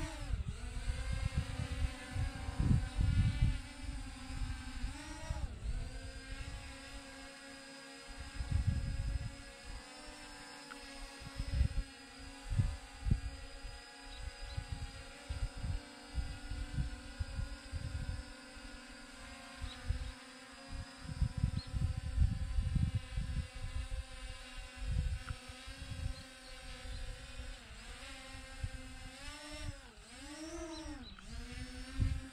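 RG 106 quadcopter drone's motors and propellers whining steadily in flight, the pitch sliding as it changes speed near the start, about five seconds in, and again near the end. Gusts of wind noise buffet the microphone throughout.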